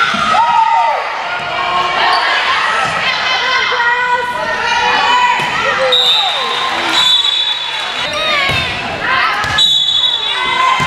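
Volleyball rally on a gym floor: the ball is struck and hit back and forth, with players' calls and spectators' shouts throughout.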